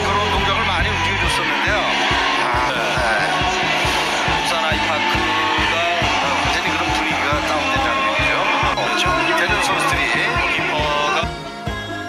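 Background music with a steady beat and a voice over it; about a second before the end it drops to quieter, thinner music.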